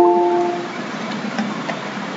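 Two-note electronic notification chime, the second note lower, fading out about half a second in. After it comes a steady hiss of background noise with a few faint keyboard clicks.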